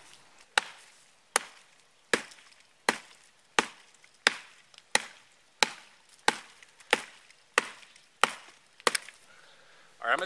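Schrade SCAXE4 tactical tomahawk's steel head chopping into a fallen log: thirteen sharp strikes at a steady pace, about three every two seconds, stopping about a second before the end.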